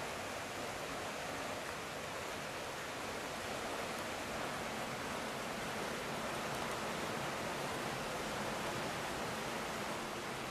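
Steady rush of water flowing through a stone irrigation channel and its sluice gate.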